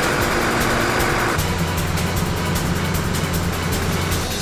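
Mobile crane's diesel engine running with a steady low hum, after a hiss that lasts the first second and a half or so; background music underneath.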